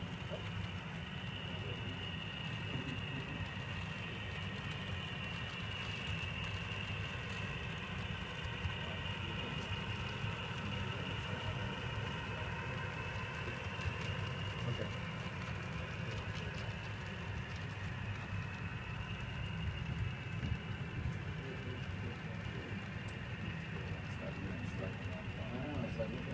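An HO scale model freight train rolling past on the layout's track: a steady low rumble from the cars' wheels, with a few small ticks and a faint high whine that wavers slightly in pitch.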